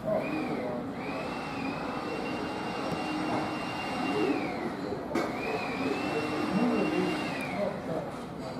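Indoor background noise with faint voices and a steady low hum. A high whine rises, holds level and falls away twice, broken by a click about five seconds in.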